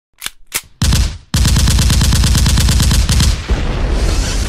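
Gunfire: two single sharp shots, a short burst, then a rapid, evenly spaced automatic volley that stops about three and a half seconds in, leaving a fading rumble.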